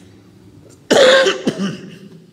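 A man coughs loudly once about a second in, with a short, smaller cough or throat-clear right after.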